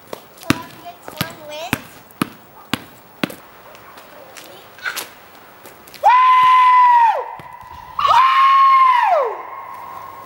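A basketball bouncing on asphalt about twice a second, with one more bounce a little later. Then come two long, steady, high-pitched tones, each about a second long, that drop in pitch as they end.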